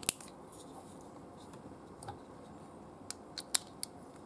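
Small sharp clicks and taps from handling a die-cast toy robot and its small parts: one loud click at the start, a single tick about two seconds in, and a quick run of four clicks in the last second.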